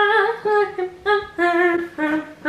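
A woman humming a wordless tune: a string of short held notes that step up and down in pitch.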